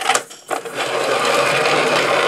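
Metal cake-decorating turntable spun by hand: a few knocks as it is handled, then a steady whirring of the top plate turning on its base from about half a second in.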